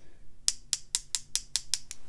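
Paintbrush tapped repeatedly against another brush's handle to flick watercolor paint onto the paper: about ten sharp clicks at roughly five a second, starting about half a second in and stopping just before the end.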